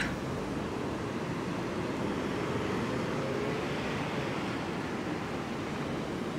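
Steady outdoor street noise: traffic running on a nearby road, with a slight swell near the middle.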